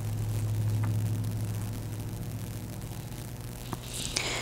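Steady low background hum with faint hiss, stronger in the first two seconds or so and easing off after, with a faint click near the end.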